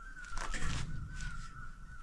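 Footsteps on a forest trail, with one harsh, noisy sound about half a second in, over a steady high-pitched drone that wavers slightly.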